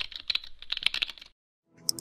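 Computer keyboard typing sound effect: a quick run of keystrokes that stops about a second and a quarter in, with a couple more clicks near the end.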